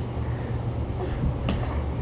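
Toy foam battle axes clashing, heard as a single light click about one and a half seconds in over a steady low hum.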